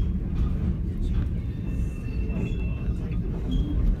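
Heritage passenger train rolling slowly round a tight curve, heard from inside the carriage: a steady low rumble of wheels on the rails, with a faint thin high tone for about a second in the middle.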